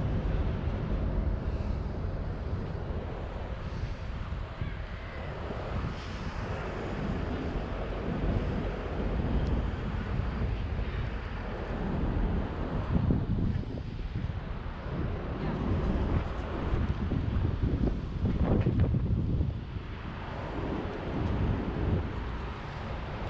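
Wind buffeting a GoPro's microphone outdoors: a rumbling noise that swells and dips in gusts every few seconds.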